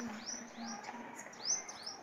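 A small bird chirping repeatedly: short, high, rising chirps about three a second.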